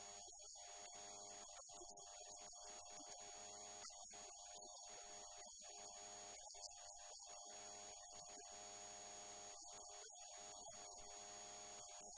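Near silence with a faint, steady electrical hum made of several steady tones.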